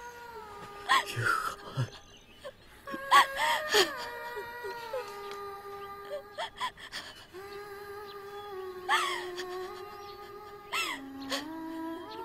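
A woman crying aloud, breaking into sobbing wails four times, over music with long held notes that step slowly from pitch to pitch.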